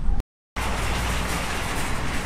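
Steady outdoor street ambience, an even hiss with a low rumble, starting after a short drop-out to silence about a quarter of a second in.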